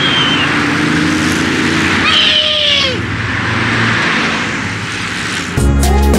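Wind and road noise from a camera riding on a road bicycle, an even rushing hiss. About two seconds in comes a short pitched sound that bends down in pitch. Background music comes back in near the end.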